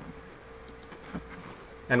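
A faint steady hum on one held tone in a pause between speech, with a soft tick a little over a second in.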